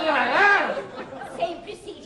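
A person's voice, without clear words: a short run of speech-like sound in the first second, then fainter voice sounds.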